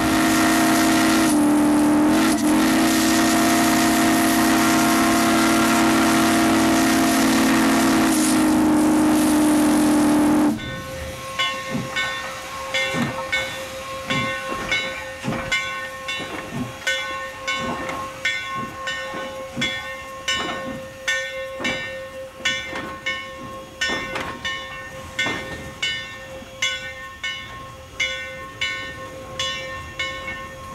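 Steam whistle of Crab Orchard & Egyptian 2-8-0 No. 17 blowing one long chord-like blast of about ten seconds, broken briefly twice near the start, then cutting off. After that comes a regular clatter of sharp clicks, about one and a half a second, over a faint ringing tone as the locomotive runs.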